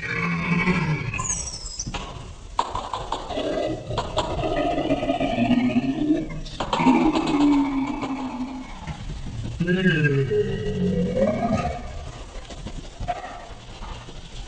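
A man yelling and wailing in fright as he rides down a tall tube slide, his voice rising and falling in long cries, with a few sharp knocks from the camera bumping along the way.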